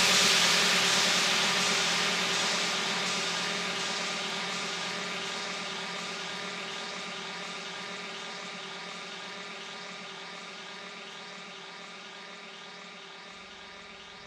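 Melodic techno breakdown with the kick and bass dropped out, leaving a sustained synth chord over a hissing noise wash. It fades steadily and grows duller as the highs are filtered away.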